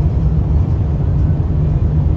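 Steady low rumble of tyre, road and engine noise inside the cabin of a small Dacia car cruising at highway speed.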